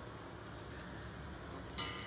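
Quiet room tone: a steady faint hiss with no distinct events, and a brief soft rustle near the end.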